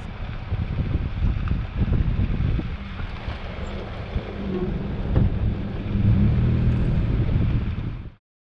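Nissan Frontier pickup driving slowly over a rough dirt track: a steady engine and tyre rumble mixed with wind buffeting the microphone.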